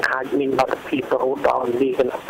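Speech only: a voice talking without pause, with no other sound standing out.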